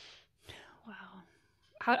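A woman's audible breath, then a faint whispered murmur, then a woman begins speaking near the end.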